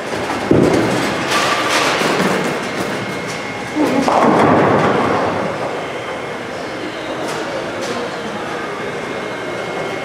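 Bowling alley sound: bowling balls rolling down the lanes and pins crashing on neighbouring lanes, with two louder crashes about half a second and about four seconds in.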